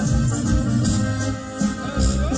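A live band playing an instrumental passage of a Mexican regional song with a steady beat: deep bass, drums and shaken percussion, with no singing.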